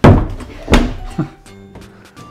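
A door being shut and locked: a heavy thunk, a second knock under a second later, and a lighter click after it.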